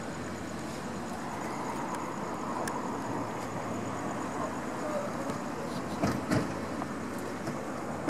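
Steady running-vehicle and road traffic noise around parked police SUVs, with two short knocks about six seconds in.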